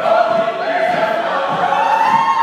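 Mixed-voice vocal ensemble, men and women, singing loudly a cappella in close harmony, holding long notes.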